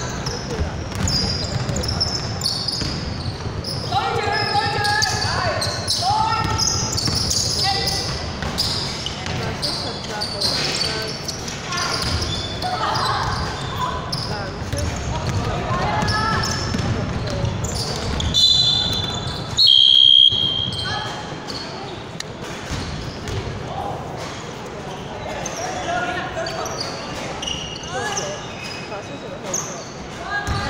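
Basketball game in a large hall: the ball bouncing on the hardwood court amid players' calls and echoing footfalls, with a short, loud whistle blast about twenty seconds in.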